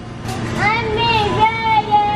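A toddler singing wordlessly in a high voice: a rising note about half a second in, then long held notes.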